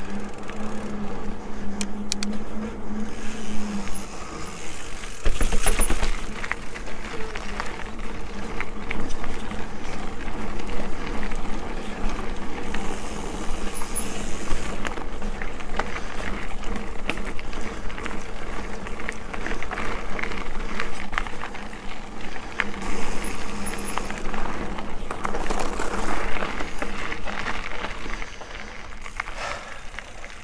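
Mountain bike riding along a path: tyres rolling on tarmac, then over gravel, with frequent small clicks and rattles from the bike. A steady hum runs for the first few seconds, and there is a louder rumble about five seconds in.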